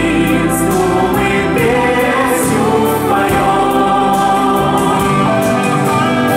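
Music with a group of voices singing together in chorus, held at a steady, loud level.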